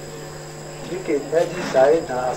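A man speaking in French, starting about a second in, over a steady faint high-pitched tone and a low hum in the background.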